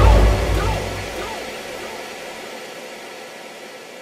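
Uptempo hardcore track ending: a last heavy bass hit with a gliding vocal sample in the first second, then the sound dies away in a long fading tail.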